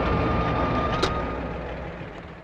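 Light truck's engine running as it pulls up and comes to a stop, the rumble dying away near the end, with a single sharp click about a second in.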